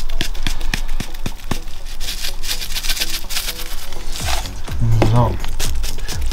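Coarse salt sprinkled from above onto sliced steak on a wooden cutting board: a dense crackle of small clicks for about the first four seconds, over background music.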